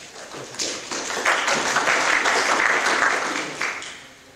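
Audience applauding, building up about half a second in, holding for about three seconds, then dying away just before the end.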